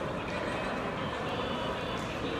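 Steady background din of a shopping mall: an even mix of ventilation hum and distant crowd noise, with no single sound standing out.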